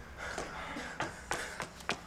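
Faint, quick footsteps: a person hurrying toward a door, a string of light taps that come closer together in the second second.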